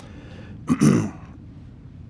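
A man clearing his throat once, a short rasping burst about a second in.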